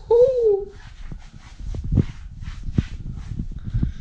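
A man's short drawn-out vocal sound with a wavering, falling pitch, a playful whine, followed by irregular knocks and rustles of the camera being handled and moved.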